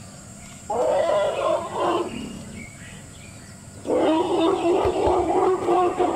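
African elephant trumpeting twice: a call of just over a second about a second in, then a longer one starting about four seconds in.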